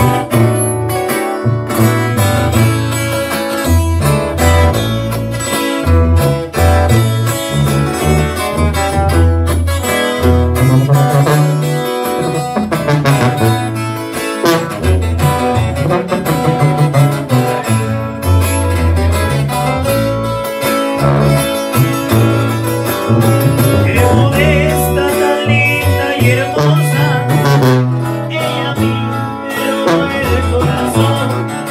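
A small live band playing an instrumental passage. A tuba walks a bass line under strummed acoustic guitars, with a brass horn playing above.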